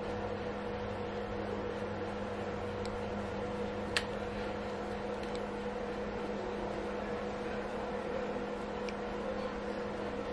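Steady machine hum, with a single faint click about four seconds in.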